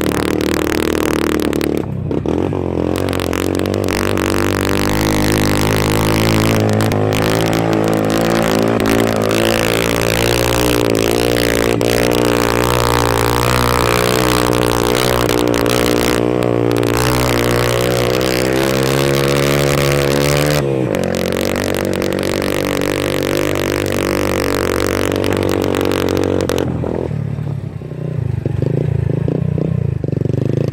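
Motorcycle engine pulling hard up a steep climb, its pitch rising slowly for about twenty seconds, dropping suddenly about two-thirds of the way in, and falling away near the end as the throttle is let off.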